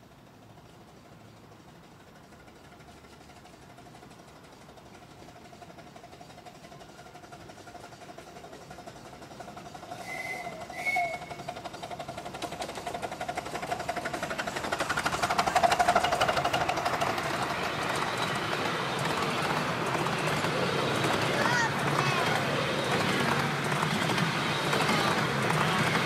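A miniature steam locomotive built as a GCR 8K-class 2-8-0, with its passenger train, approaching from a distance and growing steadily louder. It gives two short high toots on the whistle about ten seconds in, then runs noisily past along the rails, with passengers' voices as the cars go by near the end.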